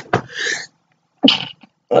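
A woman sneezing twice, two short, sharp bursts about a second apart.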